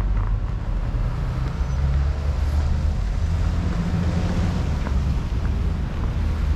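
Low, steady rumble of road traffic: the engines of cars and trucks running as they move slowly along the street.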